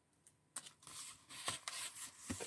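Paper rustling and rubbing as the pages of a printed book are handled and turned, starting about half a second in with a run of irregular scratchy strokes.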